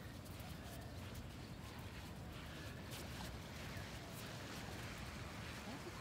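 Faint steady outdoor noise with a low rumble, and a Boston terrier whining faintly, with a short rising whine near the end.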